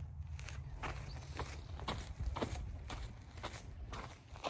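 Hiker's footsteps crunching on a sandy, gravelly dirt trail at a steady walking pace, about two steps a second, over a steady low rumble.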